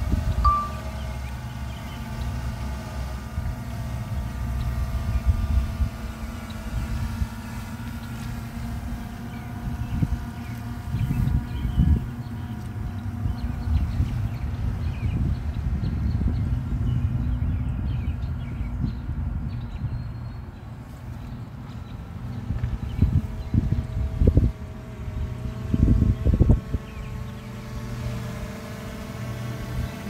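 DJI Mavic Air 2 quadcopter's propellers whining with a steady multi-toned hum as it flies its Boomerang QuickShot loop. The whine fades away in the middle as the drone reaches the far side of the loop, then returns lower in pitch as it comes back. A low rumble of wind on the microphone runs under it, with a few louder bumps near the end.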